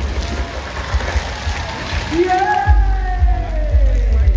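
Many thin PET plastic water bottles being twisted and crushed at once, a dense crackling of plastic that fades about two and a half seconds in, over background music with a steady bass.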